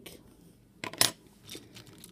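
Small hard plastic Lego pieces clicking and knocking as they are handled, with a sharp cluster of clicks about a second in and a fainter tap shortly after.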